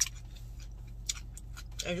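A person chewing a mouthful of food, with a sharp click at the very start and a few fainter clicks about a second in and near the end, over a steady low hum.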